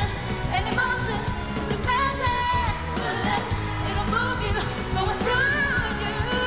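Female pop singer singing a dance-pop song over a backing track with a steady beat and bass.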